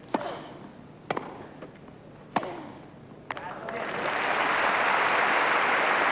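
Tennis ball struck by rackets four times, about a second apart, in a rally. Then crowd applause swells up and is the loudest sound near the end, as the point finishes.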